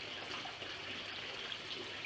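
Steady running water from a small spring and stream, an even rushing hiss with no separate splashes.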